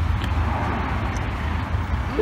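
Steady low rumble of outdoor street traffic.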